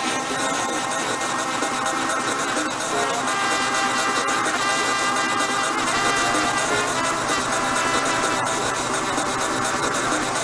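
Music from an Afro-style DJ mix: a dense, steady passage of sustained melodic layers with little deep bass.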